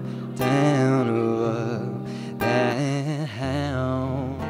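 A man singing held notes with vibrato, in phrases broken by short pauses, to his own strummed acoustic guitar.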